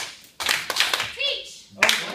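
A run of sharp hand claps, several close together about half a second in and two more near the end, with a brief child's voice in between.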